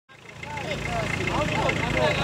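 Voices talking over the steady low hum of an idling engine.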